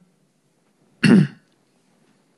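A man clears his throat once, a short loud burst about a second in, picked up close on his lapel microphone.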